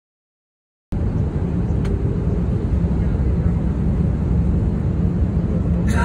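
Airliner cabin noise: a steady, loud low rumble of jet engines and rushing air that cuts in abruptly about a second in. A brief sharp noise comes near the end.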